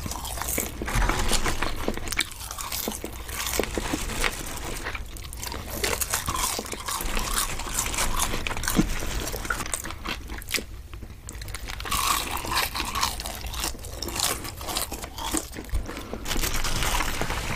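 Close-miked chewing of fried breaded chicken nuggets and french fries: irregular crunching and crackling bites with short pauses between mouthfuls.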